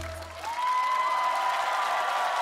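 The last of the song's accompaniment fades out, and studio audience applause breaks out about half a second in, with a long steady high tone held over the clapping.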